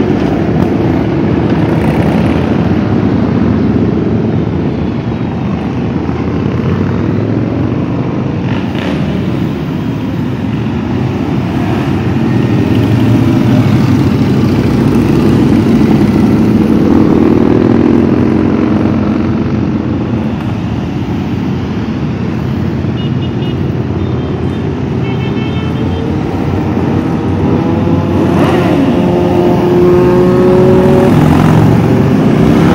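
A steady stream of parade motorcycles, mostly cruisers, riding past with engines running continuously; the loudness swells and fades as bikes go by. Near the end an engine note rises as a touring trike passes.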